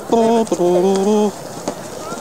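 A person's voice in long, drawn-out notes at a few steady pitches, like humming or chanting a tune rather than speaking. It stops about one and a quarter seconds in, leaving a faint hiss.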